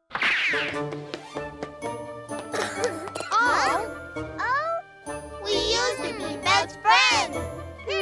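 Cartoon soundtrack of chiming, bell-like tones mixed with sound effects that slide up and down in pitch, starting suddenly after a brief silence.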